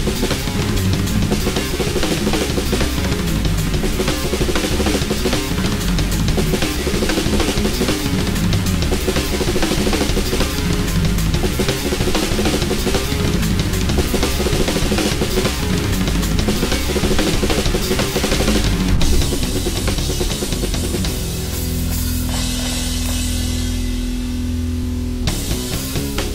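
Ludwig clear acrylic drum kit played in a heavy rock groove, with bass drum, snare and cymbals, over a distorted guitar and bass riff. About 21 seconds in, the riff gives way to a long held, ringing chord while the drumming thins. The full groove comes back just before the end.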